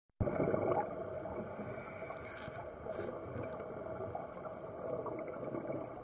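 Muffled underwater noise picked up through a dive camera's housing: a steady rushing haze, with a few brief crackles between about two and three and a half seconds in.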